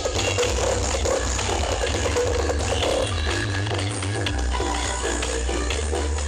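Electronic dance music played very loud through a truck-mounted 'sound horeg' sound system, with a heavy, deep bass line that steps between notes.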